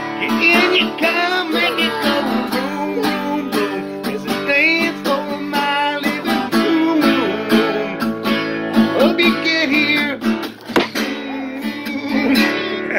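Acoustic guitar strummed with a man singing along. A sharp knock sounds near the end, as the playing dips.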